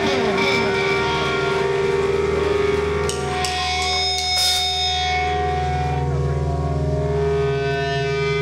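Live rock band playing, loud and steady: electric guitars and bass holding ringing, sustained chords over drums.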